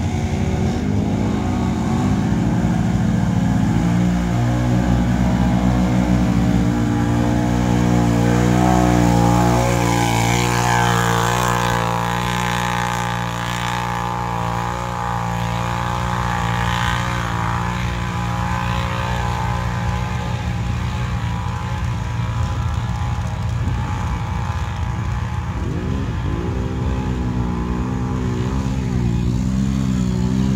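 Several ATV engines, among them a Can-Am Renegade, running hard as the quads churn through mud. There is a steady engine drone throughout, with throttle revs rising and falling, strongest around ten seconds in and again near the end.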